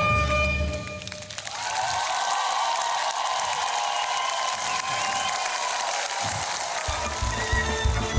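Violin with orchestral accompaniment ends about a second in, and audience applause follows for several seconds. Music with a strong bass comes back in near the end.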